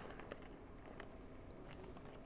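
Faint pattering of dry flux powder poured slowly from a pinched paper coffee filter into a bottle, with a few light ticks.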